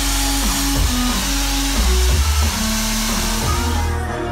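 Loud DJ set of electronic dance music over a club sound system, with a heavy bass line whose notes slide between pitches.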